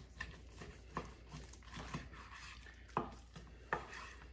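Faint sound of a long breaking knife slicing down through a beef strip loin in short strokes, with about four light clicks of the knife and meat on a wooden cutting board.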